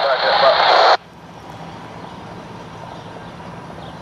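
A short, loud burst of garbled radio transmission that cuts off sharply about a second in, followed by a low steady background hum.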